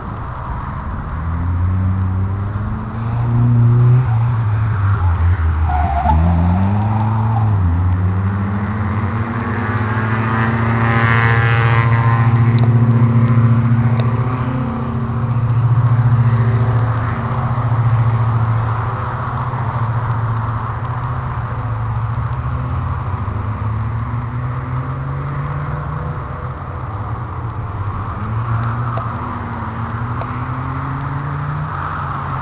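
Opel Corsa engine driven hard through a cone slalom, revving up and down as it accelerates, lifts off and shifts gear, its pitch rising and falling repeatedly. It is loudest about twelve seconds in.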